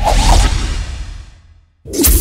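Animated-logo sound effect: a loud whoosh with a heavy low rumble that starts suddenly and fades away over about a second and a half, then a second whoosh starts suddenly near the end.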